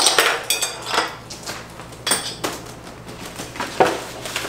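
A run of short, sharp clinks and clatters of things being handled on a table, loudest at the start and about two seconds in.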